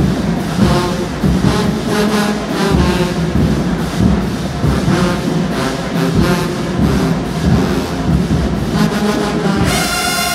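A marching band with sousaphones and brass plays over a steady drum beat, and the brass section swells into loud held chords near the end.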